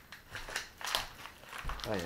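Rustling and a few short clicks of handling noise, with a dull low thump near the end.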